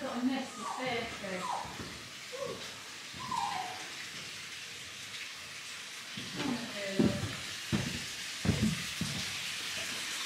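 Faint voices talking in the background over a steady hiss, with a few short knocks in the second half.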